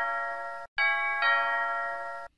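Two-tone ding-dong doorbell chime. The second note of one ring fades out, then the chime rings again, its two notes starting under a second in and half a second apart and fading away.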